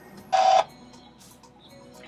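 Faint background music, with one short, loud sound about a third of a second in.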